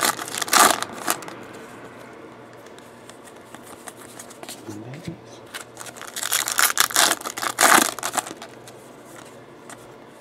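Foil trading-card pack wrapper crinkling and tearing as it is ripped open by hand in the first second. A second, longer burst of crinkling comes from about six to eight seconds in, as a clear plastic wrapper is pulled open.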